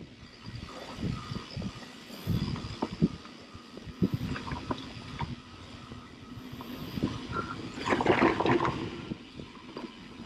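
Mountain bike riding down a dirt trail strewn with dry leaves: tyres rolling over dirt and leaves, with frequent knocks and rattles from the bike over bumps. The noise swells to its loudest about eight seconds in.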